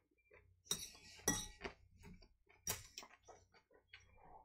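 Cutlery clinking against a bowl as salad is scooped up, a handful of short sharp clinks, the loudest a little over a second in.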